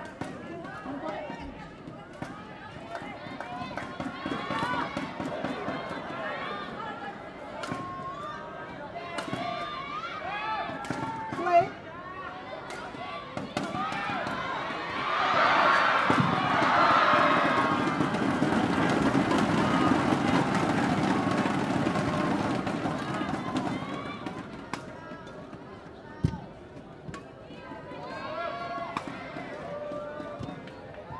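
Arena crowd chatter and calls from many voices, swelling to loud crowd cheering and shouting about halfway through for several seconds before dying down. A few sharp knocks of badminton racket strikes on the shuttlecock stand out.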